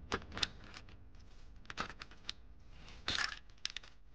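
Metal engine parts clicking and clinking as they are handled during teardown of a Mercedes 2.0-litre turbo four-cylinder, with a longer scraping rattle about three seconds in.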